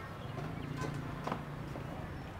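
A few light footsteps clicking on a hard floor over a low, steady background hum.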